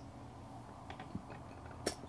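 Faint sounds of a man drinking lemonade from a glass bottle over a low room hum, with a few small ticks about a second in and a short sharp click near the end.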